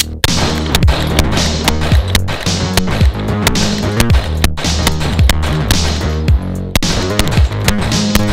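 Background music with a steady bass line over a string of 9mm pistol shots from a Smith & Wesson M&P 2.0 Compact, fired in quick, uneven succession.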